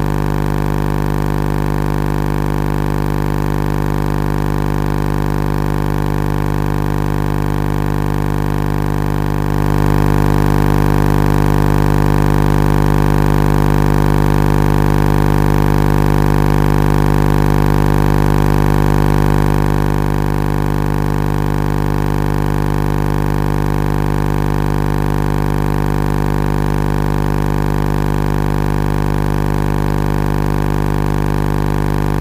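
A loud, steady droning hum made of many even tones, with no breaks or rhythm. It grows louder about ten seconds in and drops back about ten seconds later.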